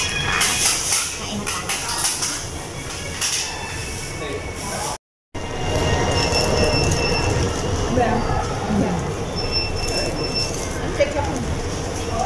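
Fast-food restaurant room noise: a steady low rumble, with paper burger wrappers crinkling in the first few seconds. A brief dropout comes about five seconds in, and short high electronic-sounding tones sound now and then after it.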